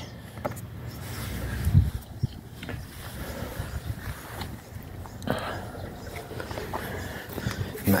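Footsteps and handling noise from a phone camera carried while walking across a garden: an uneven low rumble with scattered knocks, the loudest about two seconds in.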